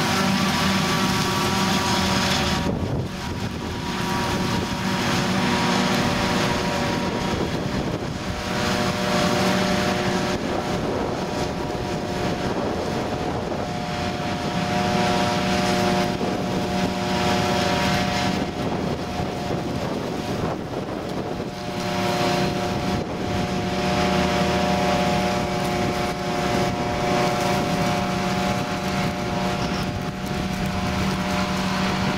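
John Deere 7450 self-propelled forage harvester chopping maize and blowing it into a trailer, with a John Deere tractor running alongside. Both engines run steadily with a droning hum, and the pitch mix shifts abruptly every few seconds.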